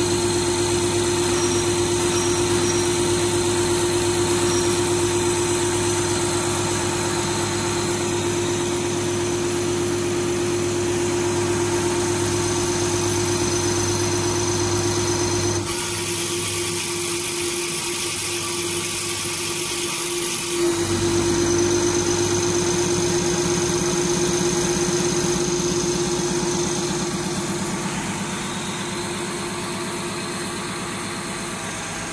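Diesel pump test bench driving a CAT 320D fuel pump at 500 rpm during a pressure test, a steady mechanical running hum with a constant whine. About sixteen seconds in, the low hum drops away for about five seconds, then comes back.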